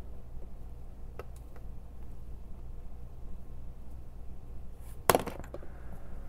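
Small hard objects handled on a hobby workbench: a couple of faint clicks, then about five seconds in a sharp clack with a brief clatter, as a metal tool is laid on the cutting mat and a small glass bottle picked up. A low steady hum underneath.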